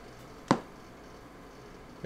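A single sharp click about half a second in, from a button press on bench test equipment, over a faint steady background hum.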